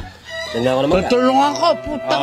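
A rooster crowing, with chicken clucks: pitched calls that rise and fall over about a second and a half.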